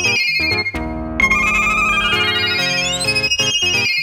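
Electro/fidget house music: a bright synthesizer riff of quick notes stepping upward in pitch over a pulsing bass, with a short break about a second in before the riff repeats.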